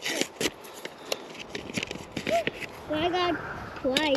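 Paper seed packet being torn open and crinkled between the fingers: a quick run of sharp crackles and rips, with a brief voice sound near the end.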